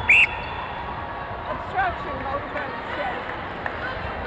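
An umpire's whistle gives one short blast right at the start, the whistle for a goal just scored. The arena crowd's steady din follows, with a few faint distant shouts.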